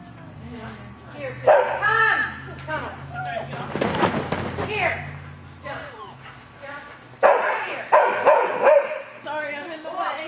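A dog barking: a few barks about a second and a half in, then a louder run of barks from about seven to nine seconds in.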